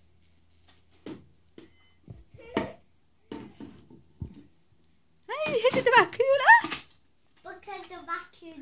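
Light knocks and taps of plastic toys handled on a wooden table through the first half. About five seconds in, a child's high, wordless voice sounds for about a second and a half, and it starts again just before the end.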